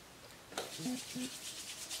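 Palms rubbing quickly back and forth with a little vegetable oil between them, warming the oil before it goes on the hair: a faint, rapid, scratchy rub that starts about half a second in.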